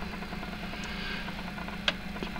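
Miniature brass four-cylinder solenoid engine running steadily with an even mechanical buzz; a single sharp click near the end.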